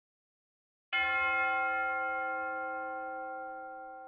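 About a second in, a single bell-like chime is struck and rings on, fading slowly.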